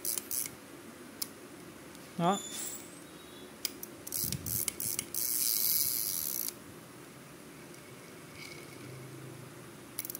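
Small Daiwa size-500 spinning reel being handled, with a few light clicks from its parts. About five seconds in, its handle is cranked fast and the rotor gives a high, hissy whirr for about a second and a half.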